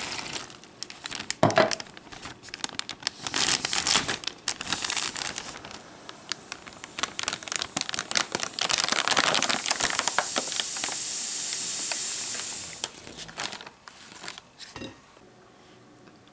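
Plastic flameless heater bag crinkling as it is sealed and handled, then a steady high hiss for several seconds as the water-activated heater pouch reacts and steams inside the sealed bag, fading away near the end.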